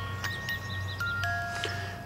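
Small wind-up comb music box playing a slow tune: single plucked metal notes, a few per second, each ringing on after it is struck, over a steady low hum.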